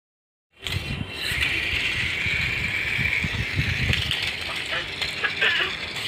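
A small toy remote-control car's electric motor whirring as it drives over concrete, with its plastic wheels and body rattling. The sound starts suddenly after a moment of silence, and the whine is strongest in the first half.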